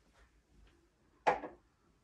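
A single short knock, a little over a second in, of an object being set down on furniture.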